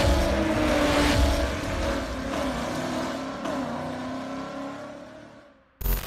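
Car engine running with its pitch sliding slowly down as it fades away. A sudden loud hit cuts in near the end.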